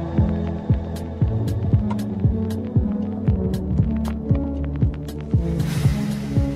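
Dark electronic UK garage/dubstep track: a sustained deep bass drone under kick drums that drop in pitch, about two a second, with scattered sharp ticks above and a hissing swell near the end.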